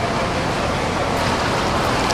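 Steady rushing water noise of a swimmer doing freestyle in an indoor pool, with no separate strokes standing out.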